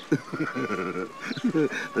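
A woman whimpering coyly in a quavering voice, without words.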